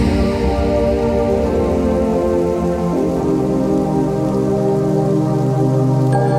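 Electronic background music: sustained synth chords with no beat over a soft hiss, the chord changing about three seconds in.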